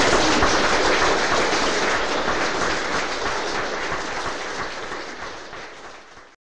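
Audience applause, loudest at the start and fading steadily over several seconds.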